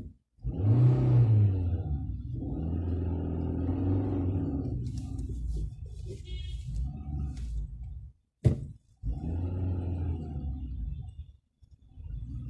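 Car engine and road rumble heard from inside the cabin while creeping in slow traffic, a low steady drone that cuts out abruptly a few times, with a short sharp click about eight seconds in.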